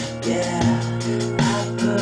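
Studio playback of a rock song mix: drums keeping a steady beat with guitar and held pitched notes underneath, the drum hits falling about every three quarters of a second.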